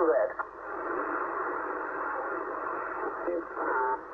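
CB transceiver's loudspeaker giving a steady hiss of band static with faint, garbled distant voices as the receiver is tuned up through the 27 MHz band. A voice from the speaker breaks off just at the start, and another briefly comes through near the end.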